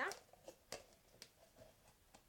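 A few faint, short clicks and taps from handling a clear plastic tub with wooden sticks glued around it as pegs.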